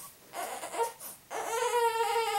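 A baby crying: faint fussing, then one drawn-out, steady-pitched cry starting a little past halfway.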